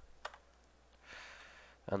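Two computer keyboard keystrokes about a quarter second apart at the start, the Enter key submitting a typed command, followed by a soft hiss lasting about half a second.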